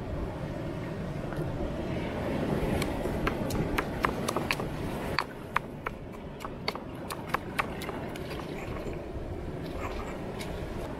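Granite mortar and pestle pounding and grinding wet seasoning paste, with sharp stone-on-stone clicks and knocks coming irregularly, several a second, from about three seconds in and thinning out near the end.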